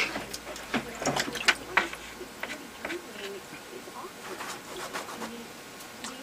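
Paintbrush being rinsed and worked against a water container, with a run of sharp clicks and taps in the first two seconds, then quieter, scattered handling sounds.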